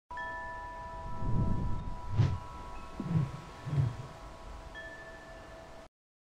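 Chime sound design for an animated logo intro: several bell-like tones ring on steadily, with four low swells under them, the second carrying a sharp hit. Everything cuts off suddenly just before the end.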